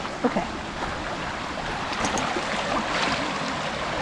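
Shallow rocky creek running steadily over stones as a husky wades into the water.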